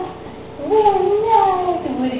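A woman's high-pitched, drawn-out cooing voice, with no clear words: after a short pause, one long call that wavers slowly in pitch.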